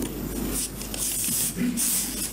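Papers rustling close to a microphone, in short bursts of hiss about half a second in, at a second and near the end, over a steady low mains hum.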